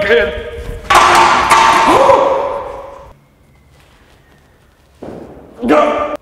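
A sudden loud crash about a second in, with a second hit half a second later, ringing and dying away over about two seconds. Near the end there is a short, loud vocal outburst.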